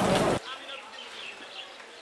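A voice that cuts off abruptly less than half a second in, leaving quiet outdoor background with faint, short high chirps.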